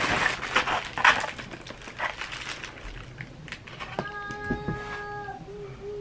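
Crinkling and rustling of a plastic mailer package being handled, then a person humming one steady note that starts abruptly about four seconds in and begins to waver near the end.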